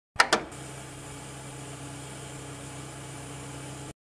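A videocassette player starting playback: two sharp mechanical clicks, then a steady low hum with tape hiss that cuts off suddenly near the end.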